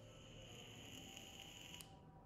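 A faint, high-pitched beep held for almost two seconds, then cut off suddenly, over a low background hum.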